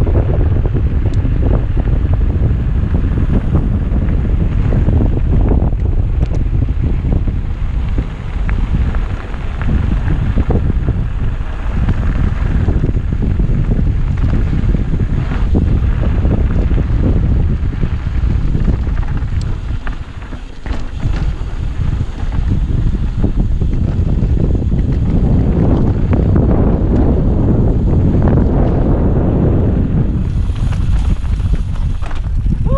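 Wind buffeting a helmet-mounted camera's microphone as a mountain bike rolls fast down a dirt and gravel trail. Tyre rumble and many small rattles and knocks come from the bike over the rough ground. The wind noise eases briefly twice, about eight and twenty seconds in.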